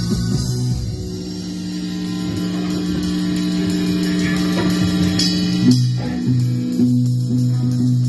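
Live rock band playing, with electric guitars and bass holding long sustained notes over light drums; the chord changes with a few sharp hits after about six seconds.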